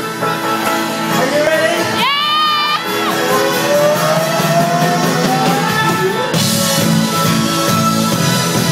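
Live rock band playing in a club: a male voice sings over guitar, with a high whoop about two seconds in and a long, slowly rising held note. About six seconds in the drums and cymbals come in with the full band, louder and brighter.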